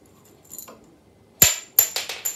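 A small toy ring hitting a hard surface, two sharp clinks with a high ringing tail about a second and a half in, then rattling on as it bounces and settles.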